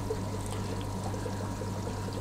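Aquarium filtration running in a fish room: a steady low hum with water trickling underneath.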